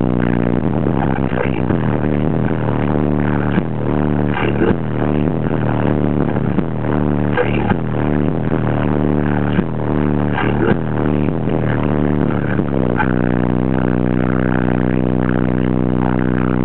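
A song played loud through a car audio system with four 15-inch Alpine Type R subwoofers on a Hifonics XX Goliath amplifier wired at 2 ohms. It is heavy in deep bass, with a steady beat. From about 13 seconds in, the beat drops out and low bass notes are held.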